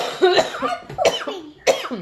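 A young boy's voice in about four short, sharp bursts, each with a sudden start and a falling pitch, the coughs or cough-like laughs of an excited child.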